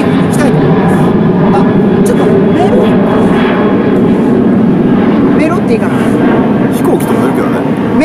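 An airplane flying overhead: a loud, steady low drone.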